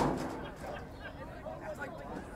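A single sharp thud at the very start, a rugby ball struck by a kick at the restart, over the low chatter of spectators.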